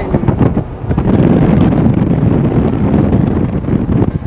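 Wind buffeting a microphone: a loud, rumbling rush that swells about a second in.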